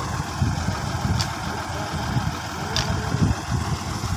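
Tractor's diesel engine idling steadily with a low, uneven rumble.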